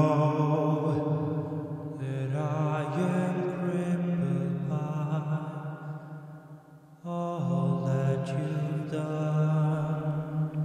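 Layered choir-style vocals holding long chords with no clear words. A new phrase swells in about two seconds in, fades near six seconds, and another begins about seven seconds in.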